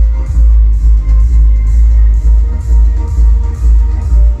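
Electronic dance music with a heavy, pulsing sub-bass, played loud through a TDA7265 2.1 amplifier into two satellite speakers and a subwoofer.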